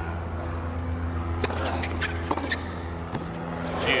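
Tennis court broadcast ambience between points: a steady low hum with a few sharp ticks scattered through the second half. A commentator's voice comes in at the very end.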